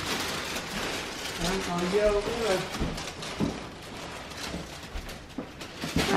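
A plastic bag rustling as it is lifted and handled, with a short stretch of a voice about one and a half seconds in.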